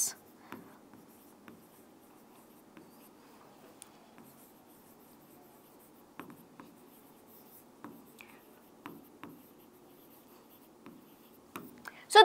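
A pen writing on a board: faint scratching strokes with scattered light taps.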